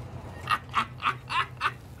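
A man making a quick run of five short, wordless vocal noises, about three a second.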